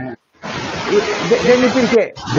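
Loud steady static hiss on the video-call audio line, cutting in about half a second in after a brief dropout, with a man's voice faintly beneath it: interference on the connection.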